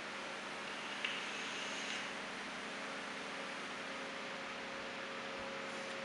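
Quiet room tone with a steady hiss and a faint mains hum. About a second in there is a faint click, then a soft airy draw lasting about a second as a vape is puffed.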